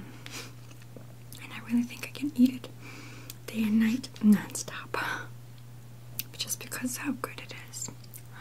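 Close-miked chewing and wet mouth clicks of a person eating herring-under-a-fur-coat salad (herring, beet, potato and mayonnaise), with several short hummed "mm" sounds between bites. A steady low hum runs underneath.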